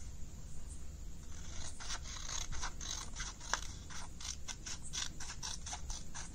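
Scissors cutting a sheet of paper along a folded crease: a run of short, crisp snips that starts about a second and a half in and repeats several times a second.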